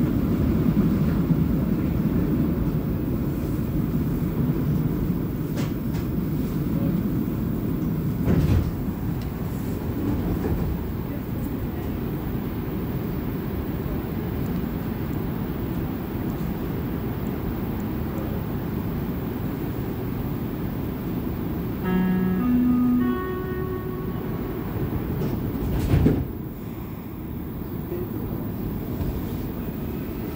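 Inside a moving Montreal métro Azur rubber-tyred train: a steady low running rumble with a couple of thumps. About 22 seconds in, a short rising two-note electronic tone sounds.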